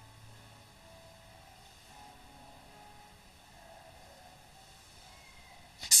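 Faint hiss and low hum during a pause in the sermon, with a few weak steady tones. Near the end a man starts speaking loudly into a microphone.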